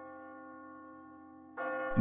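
A church bell tolling as a death knell: one stroke rings on and slowly fades, and the bell is struck again about a second and a half in.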